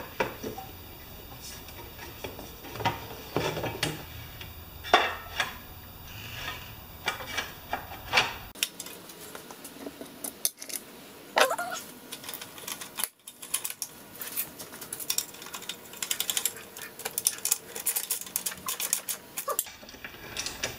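Scattered metallic clinks and knocks as the sheet-metal shroud of a Briggs & Stratton mower engine is set in place and handled. Near the end there is a quick run of clicking as a shroud bolt is turned with a wrench.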